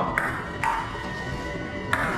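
Table tennis ball clicking off paddles and the table during a rally: three sharp hits, the first two about half a second apart, the third after a gap of over a second.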